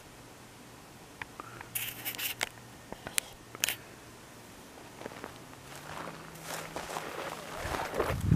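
Faint scrapes and rustling close to the microphone, sharpest in a few short scrapes about one to four seconds in and building again near the end, over a faint steady low hum of distant highway traffic.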